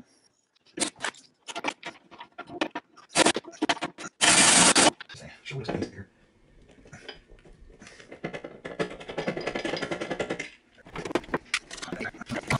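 Hand-tool work on a loose, spinning rivet nut in a steel dash panel as it is drilled out and a new one is set with a rivet-nut tool: scattered clicks and knocks, one short loud burst about four seconds in, then a few seconds of steady rough noise.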